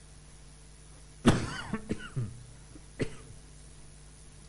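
A person coughing: one loud cough about a second in, followed by a few smaller coughs, then one more short cough about three seconds in.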